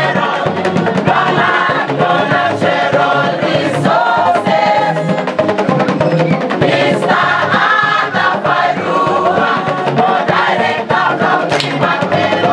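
A large group of voices singing a song together in chorus, backed by the steady beat of a bamboo band.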